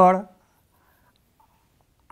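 Faint scratching of chalk on a blackboard as a lobe is drawn, just after a man's drawn-out spoken "aa" trails off at the start.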